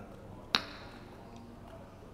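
Quiet room tone with a single short, sharp click about half a second in, followed by a brief high ring.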